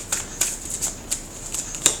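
Tarot deck being shuffled by hand: a quick, irregular run of sharp card snaps, the loudest near the end.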